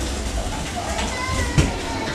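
Roller skate wheels rolling on a hard hallway floor with a steady low rumble, and one sharp knock about one and a half seconds in, with faint voices behind.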